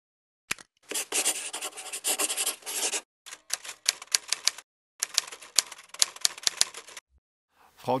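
Logo-animation sound effects: a dense scratchy stretch like a felt-tip marker scribbling on paper, then two runs of sharp typing clicks, about five a second, as the lettering is written out.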